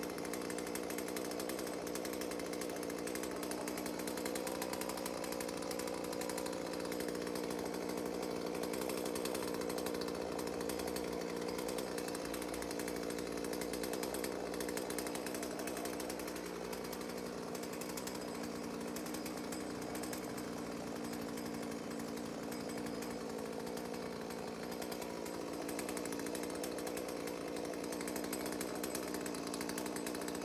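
Chainsaw running at a steady pitch as it cuts at the top of a tree trunk, with small shifts in the engine note past the middle.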